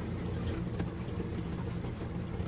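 Faint clicks and scraping of a plastic Python gravel-vacuum faucet adapter being screwed onto a sink faucet's threads, over a steady low hum.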